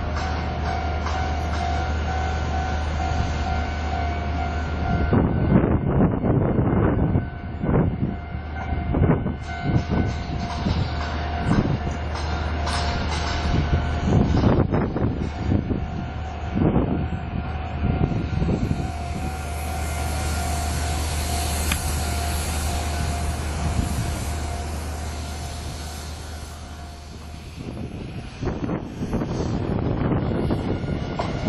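Kintetsu 50000 series 'Shimakaze' electric express train approaching and passing, its wheels clattering over rail joints and points in repeated knocks. A level crossing warning bell rings a steady tone, strongest at the start, and a hiss from the passing cars follows in the second half.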